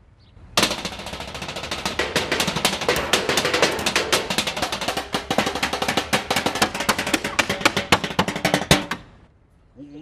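Galvanized metal trash can played with drumsticks: a fast, dense run of metallic strikes on the lid and sides. It starts about half a second in and cuts off suddenly near the end.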